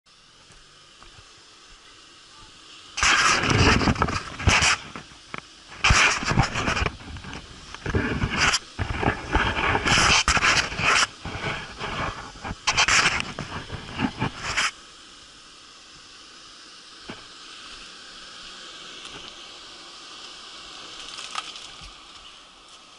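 Rock-crawling buggy engine revved in loud, irregular bursts for about twelve seconds while climbing a rock ledge, then dropping back to a low background.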